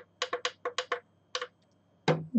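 A quick, irregular run of about seven sharp clicks or taps in the first second and a half, then quiet.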